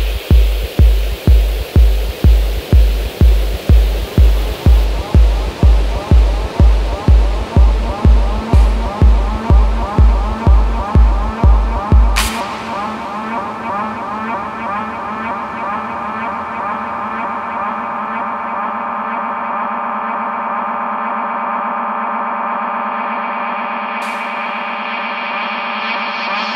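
Techno track with a steady four-on-the-floor kick drum at about two beats a second under synth layers. About twelve seconds in, the kick drops out on a sharp bright hit. A sustained, pulsing synth breakdown carries on without drums.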